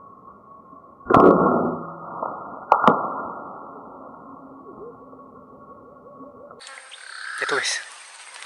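Slowed-down, deep and muffled audio with two sharp loud hits about a second and a half apart, the first the loudest. Near the end it returns to normal speed with a falling whoosh.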